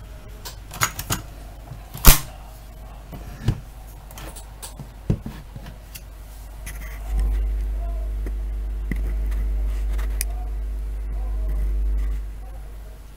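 Sharp clicks and knocks of handling on an open cassette deck, the loudest about two seconds in. From about seven seconds in, a steady low hum with a buzz over it comes from the powered-up Pioneer CT-300 tape deck and stops just at the end.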